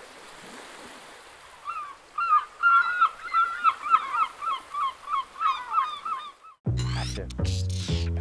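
Water gushing with a bird honking over it, about three calls a second, for several seconds. Near the end the water and bird stop and music begins.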